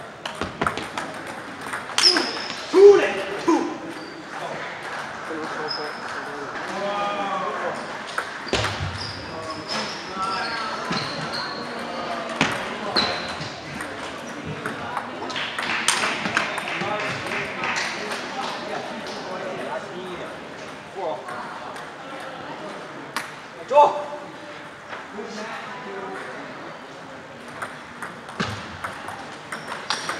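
Table tennis ball clicking off paddles and the table in rallies: sharp, irregularly spaced ticks over a steady background of many people talking.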